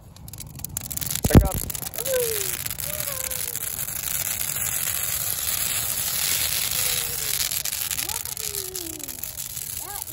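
Dry Christmas tree catching fire in a firepit: a dense crackling rush of burning needles that builds over the first couple of seconds and then holds steady. A single sharp knock comes about a second and a half in.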